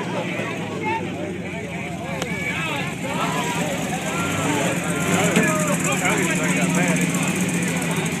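Pickup truck engine running at a mud bog, a steady low hum that gets louder from about halfway through, with onlookers' voices talking over it.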